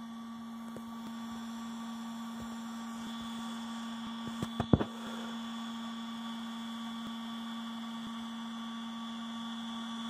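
Cooling fan inside a Ryobi Powersource 150 battery inverter running with a steady hum. A few light clicks come about halfway through.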